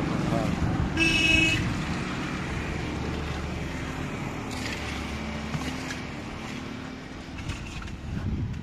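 A vehicle horn toots once, briefly, about a second in, over a steady low rumble of engine and traffic noise; a fainter horn-like tone comes again around the middle.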